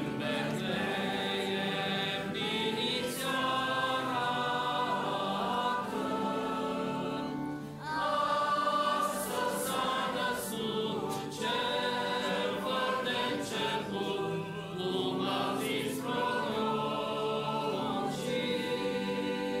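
Church choir singing a Romanian Christmas carol in several-part harmony, in long held phrases with a brief breath pause about eight seconds in.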